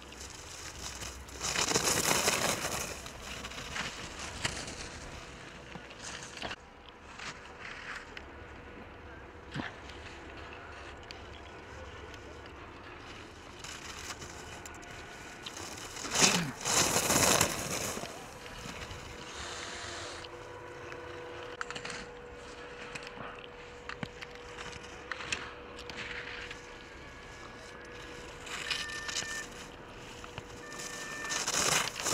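Skis carving on hard-packed snow as two ski racers pass close by in turn, about two seconds in and again about sixteen seconds in. Each pass is a scraping hiss of the edges that swells and fades over a second or two.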